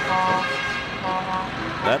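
Truck horns blaring from a convoy of trucks driving past, several steady horn tones at different pitches sounding together in short blasts.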